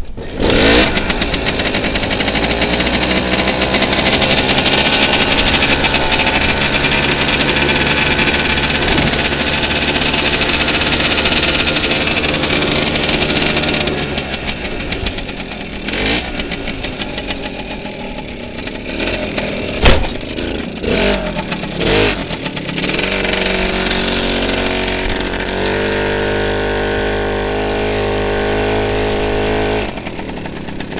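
Garelli moped's small two-stroke engine starting about half a second in and running steadily. Around the middle it drops back, with a few sharp knocks and clicks, then picks up again near the end.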